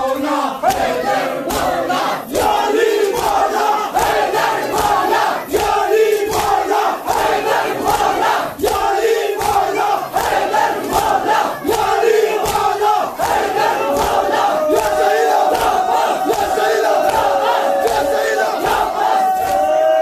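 Sina zani matam: a crowd of men chanting and calling out together over regular hand slaps on their chests, about three slaps every two seconds, with a long held chanted note in the second half.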